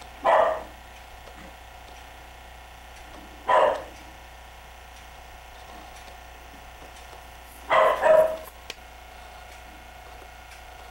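A dog barking: single barks about three seconds apart, then two quick barks near the end.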